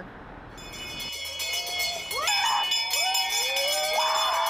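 A brass handbell being rung by hand. Its high, continuous jangling starts about half a second in, and voices calling out join over it from about two seconds in.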